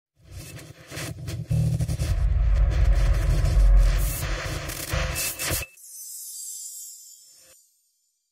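Channel logo intro sting: a loud musical sound effect with heavy deep bass that cuts off about five and a half seconds in, followed by a fainter high hiss that fades away.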